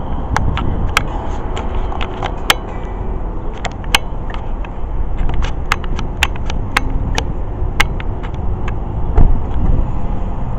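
A steady low outdoor rumble with many irregular sharp clicks and ticks scattered through it; no guitar playing yet.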